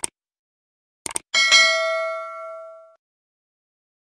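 Sound effects for a subscribe-button animation: short mouse-click sounds at the start and again about a second in, then a bright notification-bell ding that rings for about a second and a half and fades out.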